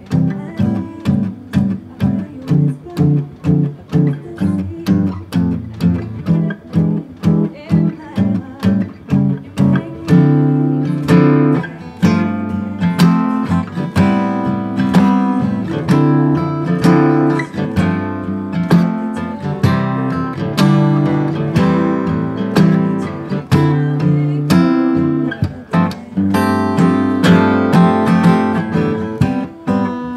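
Solo steel-string acoustic guitar playing an instrumental arrangement of a pop song. Chords pulse evenly about twice a second at first, then the playing turns fuller and busier from about ten seconds in.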